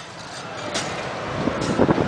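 Zipper carnival ride in motion, heard from inside its mesh cage: a steady rushing noise of wind and ride machinery that grows louder in the second half, with a few knocks near the end.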